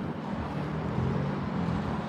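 Steady low hum of a vehicle engine running at idle, over light outdoor background noise.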